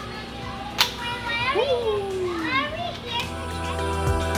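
Children's voices, squealing and calling with sliding pitch, one long falling cry among them, and a sharp click about a second in. Music comes in near the end.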